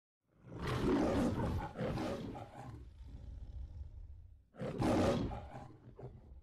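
The Metro-Goldwyn-Mayer logo's lion roar: a long roar in two surges, then a low rumble, then a second, shorter roar about four and a half seconds in.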